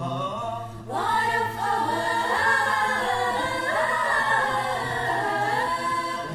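Mixed choir of women's and men's voices singing a cappella in harmony over a held low note. About a second in, a louder phrase begins, its voices sliding up in pitch.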